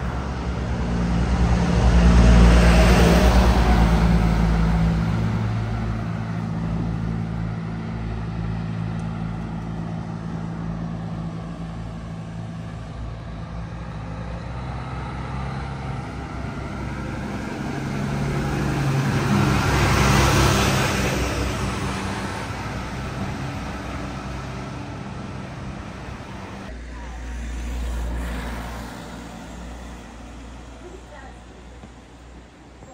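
Road vehicles passing close by on a street, each one swelling and fading with engine hum and tyre noise. One passes about two to four seconds in, a truck about twenty seconds in, and a smaller one near the end.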